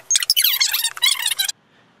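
A voice played back fast-forwarded: high-pitched, garbled, rapid chatter that cuts off suddenly about one and a half seconds in.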